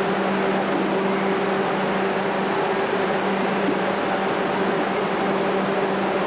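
Steady mechanical hum with a constant low drone and an even hiss, like a fan or ventilation unit running.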